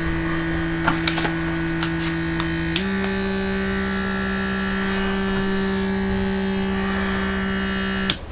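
Battery-powered lip plumper running against the lips with a steady electric hum. The hum steps up slightly in pitch about three seconds in and stops abruptly at the end, with a few faint clicks early on.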